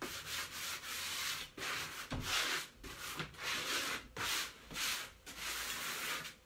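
A hand-held sanding block rubbing over a freshly painted wooden door in repeated back-and-forth strokes, wearing through the paint to give it a distressed finish.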